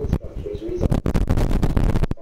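Soundtrack of an old 1973 film played back through loudspeakers: short low tones about half a second in, then a dense run of clicks and crackle.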